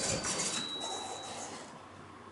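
Otis elevator arriving: the doors slide open with a fading rush of mechanical noise, and a thin high tone sounds for about a second before stopping.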